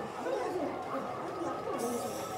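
Indistinct talking of voices, with a short hiss near the end.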